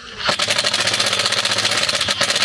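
Cordless impact driver hammering a self-tapping screw through a metal solar-panel bracket and mounting clip. It is a fast, steady rattle of rapid impacts that starts about a third of a second in.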